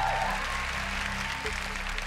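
Studio audience applauding over a game-show music cue of steady, held low notes.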